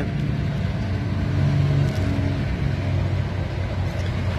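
An engine running steadily, a low hum with a slight shift in pitch partway through.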